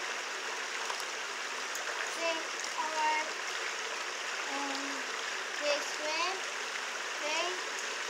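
Steady rush of running water, with a few short background voices over it around the middle and near the end.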